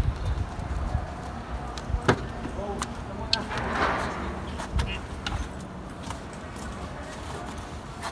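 Footsteps on pavement, then a van's door latch clicking open and rummaging inside the cab, with a few sharp clicks and a brief rustle.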